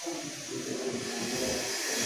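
Felt board duster rubbing across a chalkboard, a scrubbing swish over a steady background hiss.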